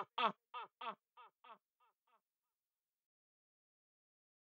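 A single rapped vocal syllable repeating as a delay echo, about three times a second, each repeat fainter, dying away after about two seconds.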